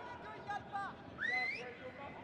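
Players shouting to each other across a football pitch in an empty stadium, with no crowd noise, and a short rising whistle about a second and a half in.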